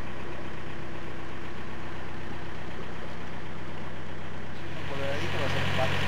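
Narrowboat diesel engine running steadily at low cruising speed. About four and a half seconds in, its low hum grows louder, and a man starts talking.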